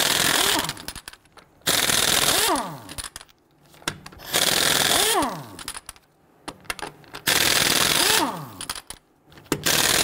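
Impact wrench on a 19 mm socket, hammering off the lug nuts in five bursts of about a second each, one per nut. After each burst the tool winds down with a falling whine.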